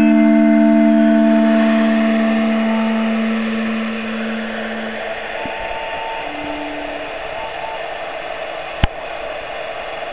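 A compressed-air hydraulophone-like instrument holds a chord that dies away about three to five seconds in, with a few short notes after it. Under the notes is a steady rush of air escaping from the instrument's jets, and a sharp click comes near the end.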